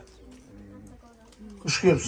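A pause in a man's speech over a handheld microphone, with faint low steady tones in the background, before his voice comes back loudly near the end.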